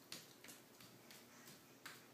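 Near silence with a few faint soft taps: a toddler's bare feet stepping on a hardwood floor.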